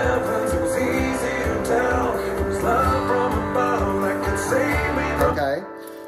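A rock song plays back at full speed, with a singing voice, bass and drums, while a semi-hollow electric guitar strums chords along with it. The music stops about five and a half seconds in.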